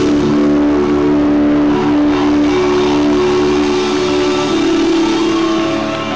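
Live band's guitars holding one long sustained chord that rings out at the close of a song, easing slightly near the end.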